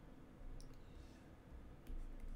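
A few faint, sharp clicks over a low steady hum: the clicks of the pointing device used to hand-write a digit onto a presentation slide.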